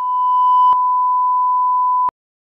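Television test-tone beep of the kind played with colour bars: one steady pure tone that grows louder over its first moments. There is a click about three quarters of a second in, and the tone cuts off with a click at the end.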